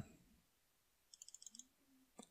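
Faint computer mouse clicks, a quick run of about six about a second in.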